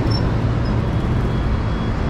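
Road traffic at a busy city intersection: cars and buses running past in a steady low rumble.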